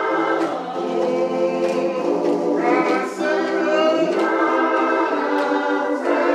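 A choir singing a gospel song in harmony, with long held notes.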